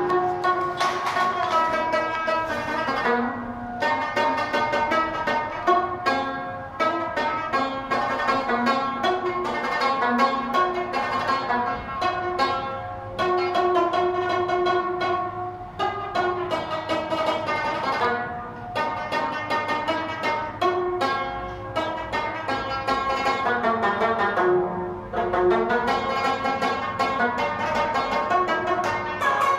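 Rabab, the short-necked Pashtun plucked lute, played solo in fast, continuous runs of plucked notes, the strings ringing on between strokes.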